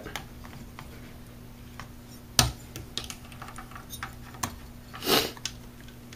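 Scattered light clicks and small knocks, about one a second, the loudest a little over two seconds in, with a short scrape about five seconds in: hands handling the rubber spark plug boot and spark tester lead on a string trimmer's engine.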